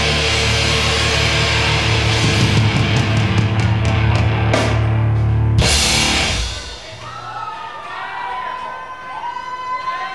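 Live rock band with drums and guitar ending a song: the loud full band stops about six seconds in on a final cymbal crash. Audience cheering and whistling follows.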